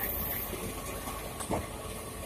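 Passenger train rolling slowly along a station platform, heard from inside the coach: a steady low rumble with a high hiss that stops about half a second in, and a single knock about one and a half seconds in.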